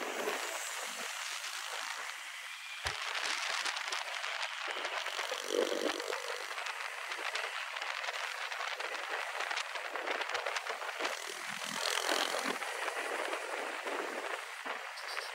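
Wind and road noise rushing past a camera mounted on a moving motorcycle: a steady hiss with no clear engine note.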